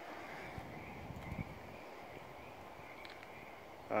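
Quiet outdoor background: a faint steady hiss with a faint high tone running through it, and a couple of soft low thuds a little over a second in.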